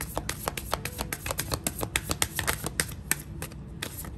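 A deck of tarot cards being shuffled by hand: a quick, uneven patter of card clicks.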